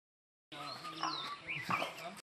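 Outdoor ambience with animal calls and high chirping glides, starting about half a second in.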